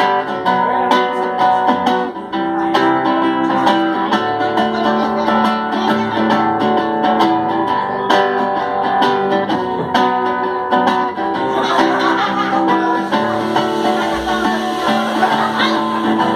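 Nylon-string acoustic guitar strummed in a steady rhythm, playing a song's instrumental introduction.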